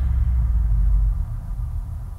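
Deep bass rumble of a cinematic logo intro, held for about a second and then fading away.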